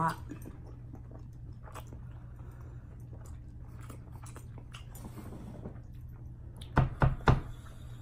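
A steady low hum with a few faint clicks, then three sharp knocks in quick succession about seven seconds in, much louder than anything else.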